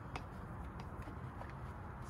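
Soft scrubbing of a Wheel Woolly brush working inside a foam-covered wheel barrel, with a few faint ticks, over a steady low outdoor rumble.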